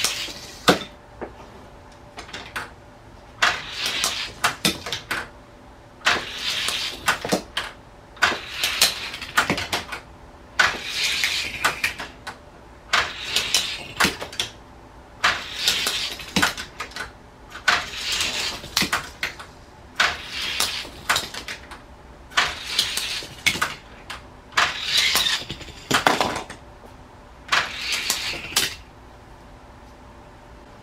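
Die-cast Hot Wheels cars sent one at a time from a plastic starting gate and rattling down the plastic track. There are about a dozen clattering runs, roughly one every two seconds.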